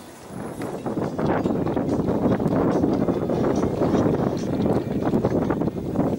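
Wind buffeting the microphone, a heavy gusty rumble that swells about a second in and stays strong.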